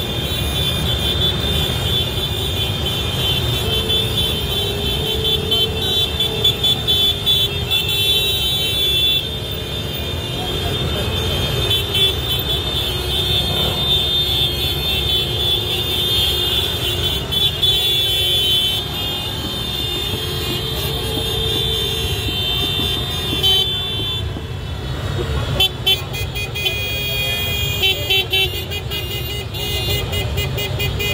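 A pack of motor scooters running at low speed with horns honking almost nonstop, over a steady low engine rumble. A shrill high tone flickers on and off above it much of the time, dropping away briefly a little past the middle.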